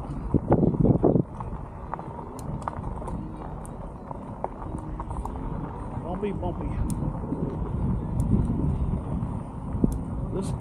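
Wind buffeting the helmet-mounted camera microphone and e-bike tyres rolling over a dirt road, with a loud rush of wind noise about a second in.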